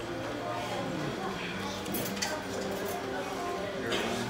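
Dining-room chatter from other people's conversations in a restaurant, with a few light clicks in the middle and near the end.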